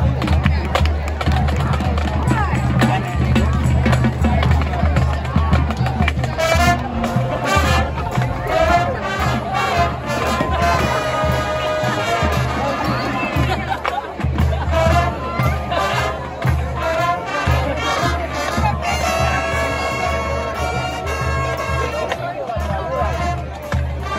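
High school marching band playing, brass over percussion, with loud held brass chords about halfway through and again near the end.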